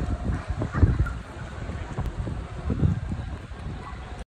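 Wind buffeting a phone microphone: an irregular low rumble with uneven gusts, some noticeably louder than the rest.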